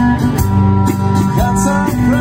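Live band playing a folk-rock song on acoustic guitar, electric bass, violin and drum kit, with a man singing.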